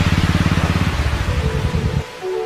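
Background music with a fast, low, pounding drum roll that fades out near the end.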